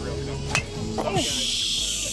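A golf club striking a ball off the mat: one sharp crack about half a second in, followed by a steady high hiss lasting about a second.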